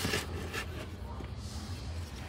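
A brief rustle of a printed paper instruction sheet being handled, over a low, steady background hum.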